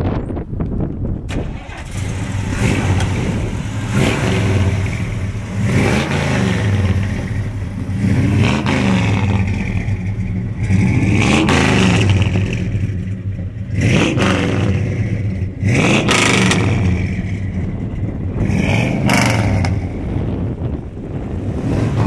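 1967 Chevelle SS's 454 cubic-inch big-block V8 revved again and again while parked, the exhaust note climbing and dropping back about every two seconds.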